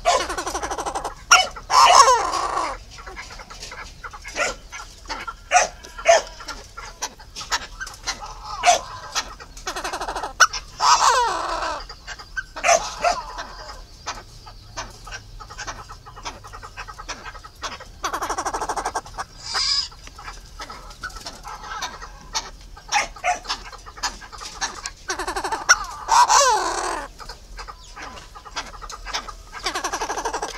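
Fowl calling in loud bursts of several falling notes, four times, with short sharp clicks scattered between the calls.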